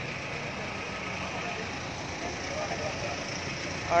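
Street noise with a vehicle engine idling steadily and faint voices in the background.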